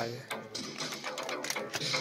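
Light clicks and taps of plastic wrestling action figures and a toy ladder being handled, under faint background music.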